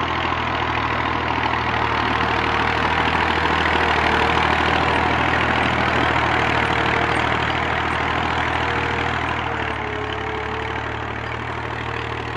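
Tractor's diesel engine running steadily under load while pulling a tine cultivator through the soil to cover broadcast wheat seed. The sound swells a little mid-way and eases slightly near the end.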